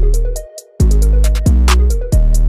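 Trap beat playing back from FL Studio: long 808 bass notes, rapid hi-hats, claps and a Serum synth melody. The whole beat cuts out for a moment about half a second in, then comes straight back.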